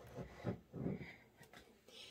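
Faint shifting and grinding of Epsom salt as a glass votive holder is wiggled down into it inside a glass mason jar.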